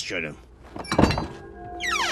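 A heavy wooden door being unbarred: a few clicks and then a loud thunk about a second in. Music with held notes comes in after it.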